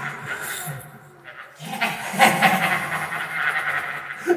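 A voice laughing, treated with effects, with a brief drop-off about a second in before the laughter resumes.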